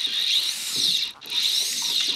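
Fly reel's drag buzzing as a hooked bonefish runs line off the spool, in two bursts of about a second each, the pitch rising and falling with the spool's speed.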